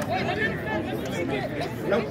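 Indistinct chatter: several people talking near each other, with no words that can be made out.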